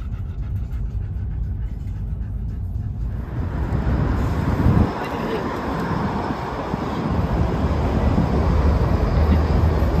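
Low rumble inside a car. About three seconds in it changes to louder outdoor city noise, a steady wash of traffic and street sound.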